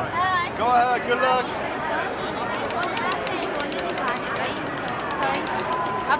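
A spinning prize wheel clicking rapidly as its pegs flick past the pointer, for about three seconds from about halfway through, over crowd chatter and excited voices.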